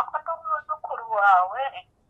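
A person's voice speaking over a mobile phone line, thin and tinny, with no low end.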